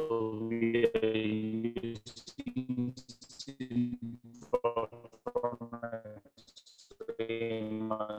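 A man's voice coming through a breaking-up video-call connection: garbled, choppy and robotic, with the words cut into fragments and dropping out every second or so.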